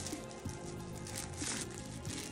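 Quiet background music, with a few faint soft crackles as a plastic spoon is pushed into a soft, gooey-centred chocolate cake on its paper lining.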